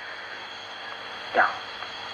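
A pause in a man's recorded speech, filled by steady faint recording hiss, with one short spoken word about one and a half seconds in.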